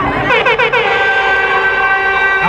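A loud horn-like tone that slides down at first, then holds one steady pitch for over a second before cutting off.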